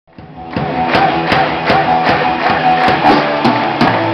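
Live rock band playing loudly: electric guitars and bass holding sustained notes over drum hits that fall about three times a second.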